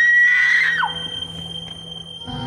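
A woman's scream at a high, held pitch that drops away and breaks off under a second in.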